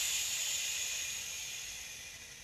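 A long hissing breath out that starts sharply and fades away over about three seconds.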